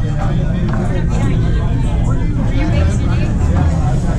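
Indistinct background chatter over a steady low hum, with a few light clacks from the foosball table in play.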